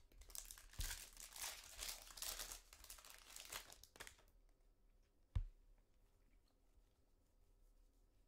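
Foil trading-card pack being torn open and crinkled for about four seconds. About five seconds in comes a single sharp knock.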